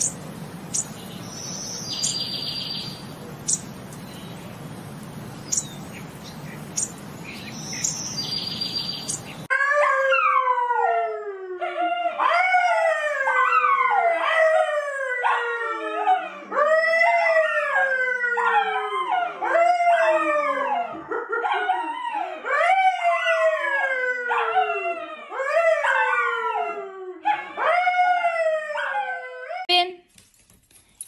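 A dog howling in a long string of falling cries, one after another about every second, starting about a third of the way in. Before that there is a faint steady hiss with two short chirps.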